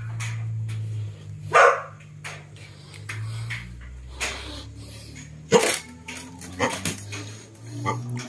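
A dog barking a few times, with gaps of a second or more between barks, over a low steady hum.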